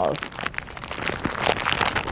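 A plastic bag of mini marshmallows crinkling and crackling as it is handled and pulled open.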